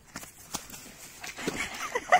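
A carp slapping and flapping on wet grass at the water's edge, a series of knocks with one sharp slap about half a second in. Near the end it slips into the shallows and starts splashing.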